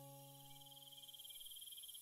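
The tail of a soft piano chord fading away to near silence, over a faint, steady, high, finely pulsing chirr in the background.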